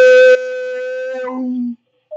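A man singing, holding one long steady note at the end of a sung line. The note is loud for the first moment, then softer, and it fades out about three-quarters of the way through.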